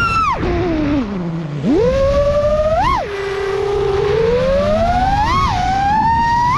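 FPV freestyle quadcopter's Xing-E Pro 2207 2750 KV motors driving 4934 S-Bang props, a whine whose pitch sweeps up and down with the throttle. It drops to a low hum about a second and a half in, then climbs sharply, with quick throttle punches just before three seconds and again around five and a half seconds.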